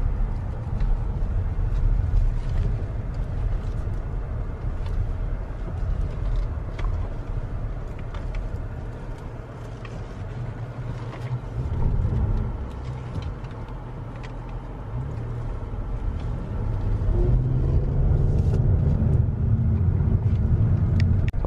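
Cabin noise of a 2018 Hyundai Azera on the move with its panoramic sunroof open: a steady low rumble of engine, tyres and passing air, growing louder in the last few seconds.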